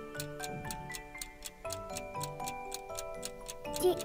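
A ticking-clock sound effect counting off the thinking time for a quiz answer, with quick, evenly spaced ticks over soft background music.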